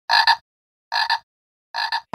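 Three identical short electronic sound-effect hits, each a quick double pulse, repeating about every 0.8 s with silence between them: a DJ remix intro effect.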